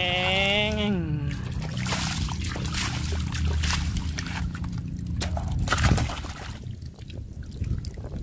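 Water sloshing and splashing as a plastic toy dump truck loaded with gravel is pushed through shallow water, with scattered small clicks and knocks. In the first second, a short voice-like sound falls in pitch.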